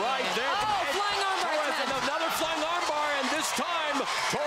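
Several voices shouting over one another, the loud calls of cornermen at the cage side, with a few thuds as the fighters hit the mat and grapple.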